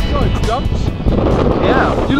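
Wind rumbling on a camera microphone out on an open field, with a man's voice starting to talk partway through. Background music stops right at the start.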